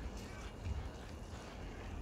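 Water pouring from a watering can onto a potato plant's leaves and the soil in a plastic grow bag, a faint, steady sound.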